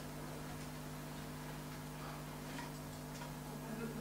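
Quiet room tone of a meeting room: a steady low electrical hum under a faint noise floor, with a few faint clicks.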